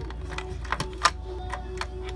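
Light, irregular clicks and taps as hands move among the wiring and wire connectors in an RV water heater's access compartment, over a steady low hum.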